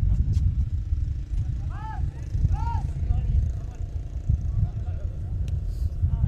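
Football match sound: a loud, constant low rumble on the microphone, with two short shouted calls from players on the pitch about two and two and a half seconds in.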